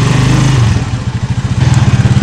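Small motorcycle engine of a passenger tricycle running loud and close, heard from inside the sidecar with a fast, even firing pulse. It eases off briefly in the middle, then picks up again.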